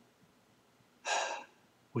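A man's short audible breath, about half a second long, a second in, after a moment of near silence. He starts speaking again at the very end.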